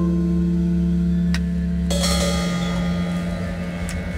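Closing bars of an avant-garde rock track: held, ringing notes sustained as a drone. There is a click about a third of the way in and a sharper hit near the middle, and the sound slowly dies down toward the end.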